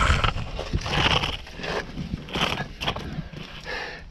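Irregular scuffs and rustles, about one or two a second, as a person crawls out from under a car over gritty bare ground, clothing dragging and rubbing.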